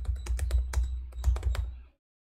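Typing on a computer keyboard: a quick run of about a dozen keystrokes over a low hum, cutting off suddenly just before the end.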